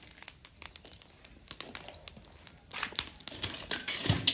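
Scattered sharp crackles from a charcoal fire roasting whole breadfruit, with plastic-bag crinkling growing denser in the last second or so as a hand reaches in with the bag to turn the fruit.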